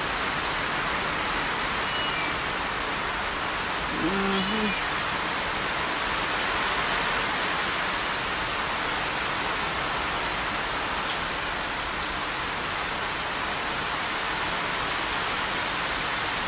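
Heavy tropical rain falling steadily on banana leaves and a thatched roof edge, a dense even hiss throughout. A short voice-like sound comes about four seconds in.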